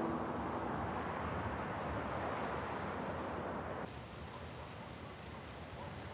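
A steady wash of distant city traffic noise. About four seconds in it drops to quieter night-time outdoor ambience, with a few faint, short high chirps.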